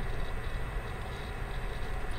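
Steady low background rumble with a faint hiss and a thin, high, steady whine. There are no distinct clicks or other events.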